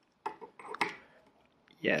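Cut metal pedal-hanger plates clinking against each other as they are handled and fitted together, a few short clicks in the first second.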